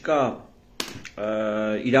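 A man speaking. His speech breaks off in a short pause, during which a single sharp click sounds a little under a second in, before he resumes with a long drawn-out vowel.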